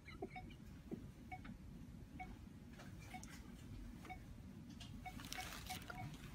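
Faint short electronic beeps of a hospital patient monitor, repeating roughly once a second, with soft rustling near the end.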